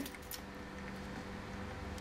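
Quiet, low steady hum of room tone, with faint handling of a clear plastic box as a small pocket-knife blade works at it.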